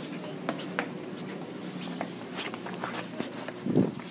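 Handling noise from a hand-held phone camera: scattered small clicks and taps over a steady low hum, with a louder rub near the end.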